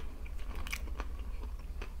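A person chewing a mouthful of food close to the microphone, with a few soft mouth clicks over a steady low hum.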